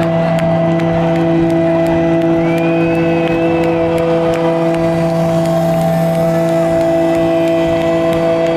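Live rock band sustaining one steady droning note through the amplifiers, with crowd noise beneath and a brief higher glide about two and a half seconds in.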